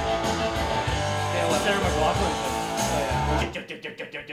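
A rock band plays guitar-driven music, then cuts off abruptly about three and a half seconds in, leaving a few short staccato hits.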